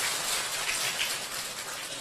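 Audience applauding, the clapping slowly fading away.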